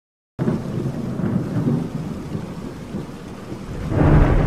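Thunderstorm sound effect: rain with rumbling thunder, starting abruptly about half a second in after a brief silence and swelling again near the end.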